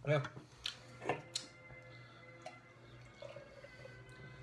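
A few light clicks of glass, then beer poured faintly from a bottle into a glass.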